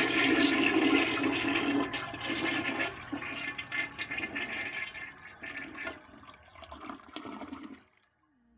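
Toilet flushing: water rushes and swirls down the bowl. It is loudest at first, dies away over several seconds, then cuts off suddenly near the end.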